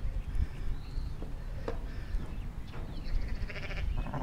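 Sheep bleating faintly near the end, over a low rumbling background with a few small handling clicks.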